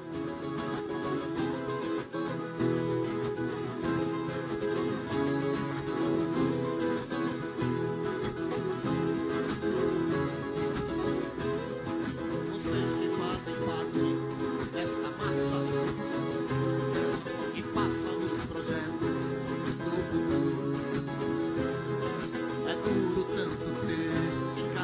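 An orchestra of violas caipiras, the ten-string Brazilian country guitars, playing together: many plucked strings sounding a steady, full tune.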